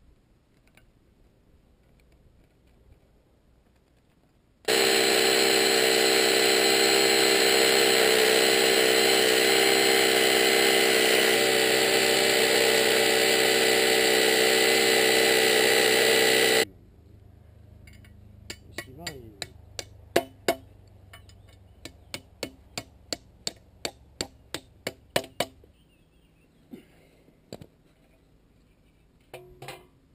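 Electric drill boring an anchor hole into a concrete footing for a fence post's base plate, running steadily for about twelve seconds from about five seconds in and stopping abruptly. It is followed by a string of sharp clicks, about two a second, for several seconds.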